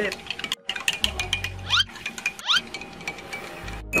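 Metal spoon stirring a drink in a glass mug, clinking repeatedly against the glass, over background music with a low bass line.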